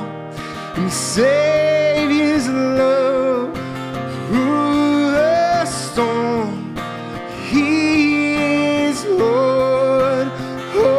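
A man singing a slow worship song to his own strummed acoustic guitar, the voice in long held phrases a few seconds apart.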